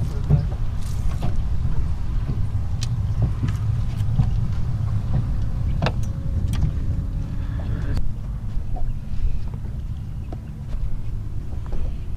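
Scattered knocks and clatter of a freshly landed black drum and tackle being handled on a fiberglass boat deck, over a steady low rumble.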